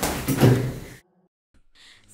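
A sudden noisy hit that swells to a peak about half a second in and cuts off abruptly about a second in, with a door-slam-like character. It is followed by near silence.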